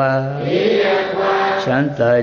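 A Buddhist monk's voice chanting a Burmese loving-kindness (metta) verse in a slow sing-song melody, holding long notes on a steady low pitch, with a short break between two phrases.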